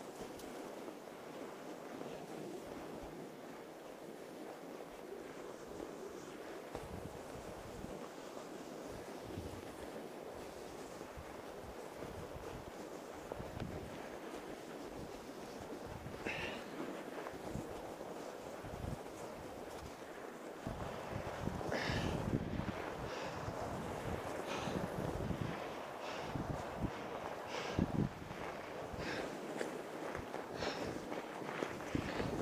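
Fat-tire e-bike rolling unpowered over packed, rutted snow, with its motor dead: steady tyre noise and wind on the microphone. From about two-thirds in, louder irregular bumps and knocks as it rides over rougher ground.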